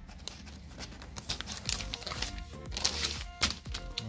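Background music, with paper rustling and clicking as the pages of an owner's manual are handled and turned. There is one louder swish of a page turning about three seconds in.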